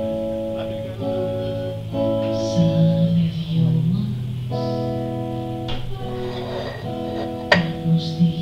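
Live music from a small band: held chords that change every second or so over a steady low bass note, with one sharp click near the end.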